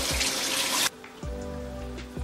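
Kitchen tap water running over a trout fillet into a stainless steel sink, stopping abruptly just under a second in. Background music with steady tones plays underneath and carries on after the water stops.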